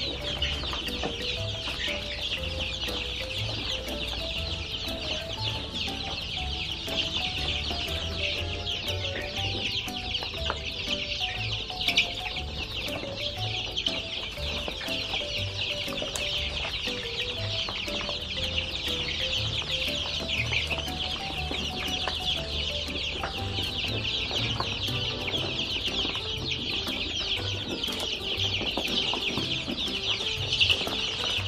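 A flock of three-week-old chicks peeping non-stop in a dense, high chorus as they crowd in to feed, over soft background music.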